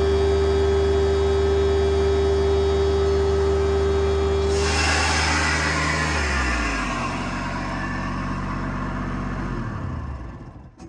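Ditch Witch HX30-500 vacuum excavator running under vacuum: its Kubota diesel engine and positive-displacement blower with a steady high whine. About halfway through the whine cuts out into a rush of air, the engine winds down to a lower, slower run, and it shuts off near the end.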